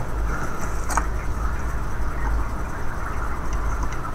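Steady low rumble and hiss of background noise, with one faint click about a second in.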